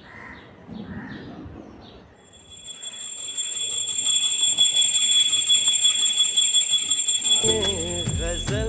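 Puja bell rung rapidly and continuously, a bright high ringing that starts about two seconds in and grows louder; a song comes in near the end.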